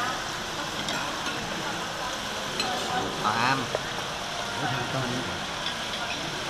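Restaurant dining-room background noise: a steady hiss-like hubbub with a few faint clicks of tableware. There is a brief bit of nearby talk about three seconds in.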